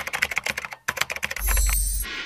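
Computer-keyboard typing sound effect: a quick run of key clicks with a brief break partway, synced to text typing out on screen. About one and a half seconds in, a low boom takes over.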